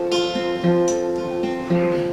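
Acoustic guitar played alone, with no voice: a few strummed chords, the bass note shifting between strokes and the strings left ringing in between.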